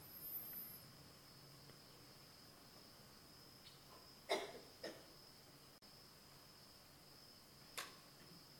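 Near silence: room tone with a faint steady high-pitched whine, broken by a few soft clicks, two about four and a half seconds in and one near the end.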